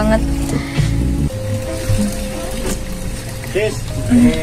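Background music from the film's soundtrack, a single note held steady for a couple of seconds, over a low hum.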